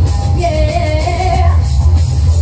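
A woman singing live into a handheld microphone over amplified backing music with a strong, steady bass. About half a second in she holds a wavering note for about a second.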